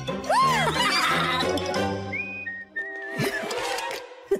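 Cartoon background music with a cartoon character's high laugh that swoops up and down in pitch in the first second. High held notes follow in the music later on.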